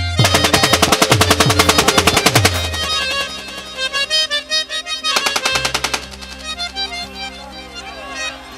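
Automatic rifle fired into the air in a long rapid burst of evenly spaced shots lasting about two and a half seconds, then a second short burst around five seconds in. Music with held reed-like tones plays underneath.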